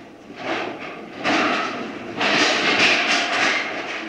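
Audience applause, a dense even clatter of clapping that swells about a second in and grows louder again about two seconds in.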